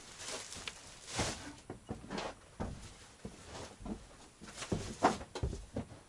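Boxes being handled and carried: scattered knocks, thumps and footsteps with some rustling, the loudest thump about five seconds in.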